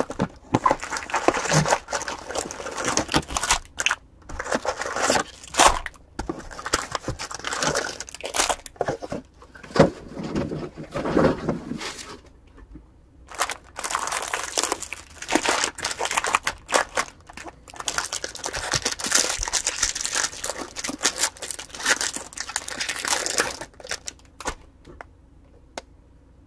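Foil wrappers of baseball card packs crinkling and tearing as packs are handled and ripped open, in irregular bursts with a short pause about halfway through. The crinkling dies away near the end.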